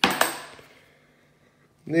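Two sharp clinks of 50p coins dropped into a plastic sorting tub, about a fifth of a second apart, with a brief ring that fades within half a second.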